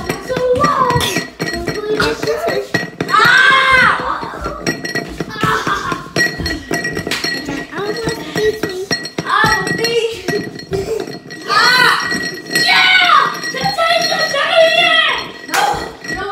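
Children shouting and squealing without clear words during a rough play fight, broken by scattered sharp thuds of blows.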